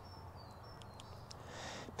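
Quiet outdoor background with a few faint, thin, high bird chirps in the first second or so.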